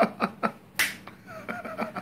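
A quick run of sharp finger snaps, several a second, with one louder crack a little under a second in.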